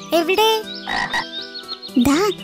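Cartoon frog croaking: a quick run of short calls rising in pitch, then a short raspy croak about a second in.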